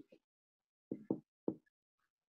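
Three faint, short knocks: two close together about a second in and a third shortly after.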